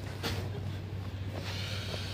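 A steady low hum under a faint even hiss, with a brief rustle about a quarter second in.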